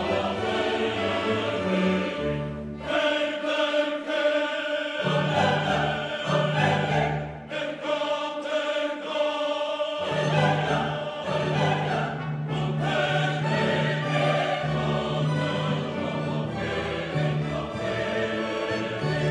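An orchestra with strings, cellos and double basses among them, playing a classical piece while a choir sings, over long held bass notes.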